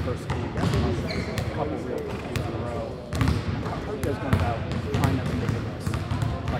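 Basketballs bouncing on a hardwood gym floor, irregular thuds scattered throughout, under voices.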